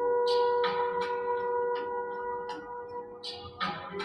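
Slow ambient meditation music of long sustained tones, held steady for about three seconds. Near the end it moves to a new, lower note.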